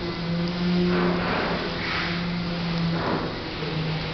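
An automatic sliding glass door's drive motor running as the door slides closed, giving a steady low hum that breaks off briefly a couple of times.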